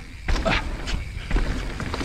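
Full-suspension mountain bike (Evil Wreckoning LB) rolling fast down a dirt trail: tyre noise on dirt with a few short knocks and rattles from the bike, over a steady low rumble of wind on the helmet camera.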